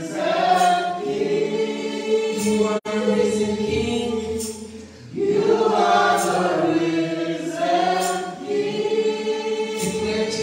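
A small vocal group singing a gospel worship song together, with a short lull in the singing about five seconds in.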